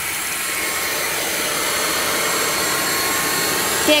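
Tefal Air Force 360 Light Aqua cordless stick vacuum with its wet-mop head running steadily over a floor, suction and mopping at once: an even whirr with a thin high whine.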